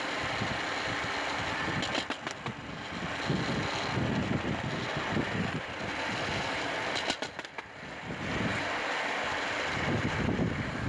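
Hand-pushed rail trolley rolling along the track, its wheels rumbling steadily on the rails. A short cluster of clacks comes about two seconds in and another about seven seconds in.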